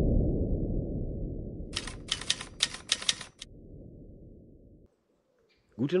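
Intro sound effects: a deep synthesized boom fading slowly away, with a quick run of about six typewriter key clicks around two to three seconds in as the title types itself out.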